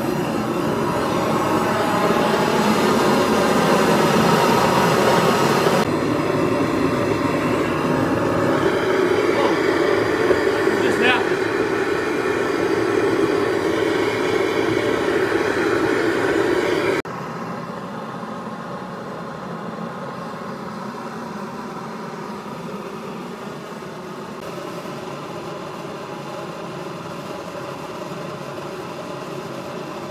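Homemade propane burner with a tangentially fed steel combustion tube, running steadily on its own flame with the spark plug disconnected: a continuous combustion noise that stays self-sustaining. The level drops a little past halfway through.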